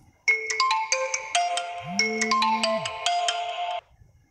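Smartphone ringtone for an incoming call: a bright melody of short struck notes, with a low buzz about a second long partway through. It cuts off suddenly just before the end.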